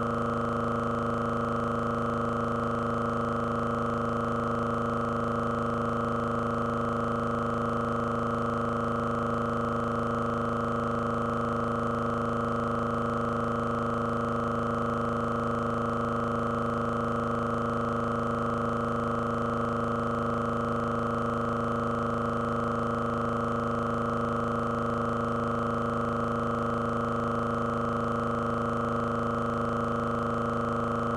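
A loud, perfectly steady electronic drone of several fixed tones that never changes: a stuck, repeating audio glitch in a recording whose picture has frozen.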